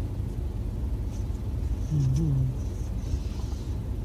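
Steady low rumble of an idling vehicle engine heard from inside the cabin. A brief low voiced hum about halfway through.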